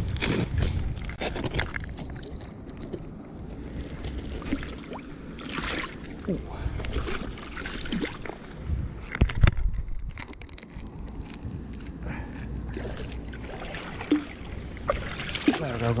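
Irregular splashing and sloshing of a hooked pike thrashing at the water's surface as it is landed by hand, mixed with jacket fabric rubbing on the chest-mounted camera. A louder knock about nine seconds in.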